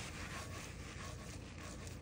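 Faint, steady sizzle of succotash of lima beans and corn frying in a hot sauté pan with oil and butter.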